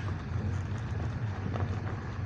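Car interior noise from inside the cabin: a steady low engine hum and tyre rumble as the car rolls slowly across an unpaved car park.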